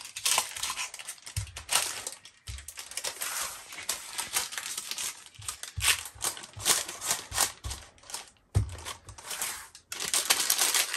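Wooden rolling pin pressing and rolling granola bar mixture flat in a parchment-lined metal baking pan: repeated crunching and paper-crinkling strokes, with a few low knocks.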